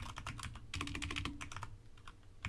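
Computer keyboard being typed on: a quick run of key clicks that thins out near the end.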